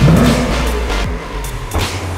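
Background music with a steady, heavy bass line.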